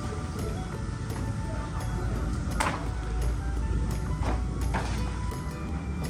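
Background music, with three short crisp sounds about two and a half, four and a quarter, and just under five seconds in.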